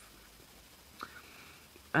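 A pause between sentences: quiet room tone, a faint click about halfway through, then a soft intake of breath just before a woman starts speaking again at the very end.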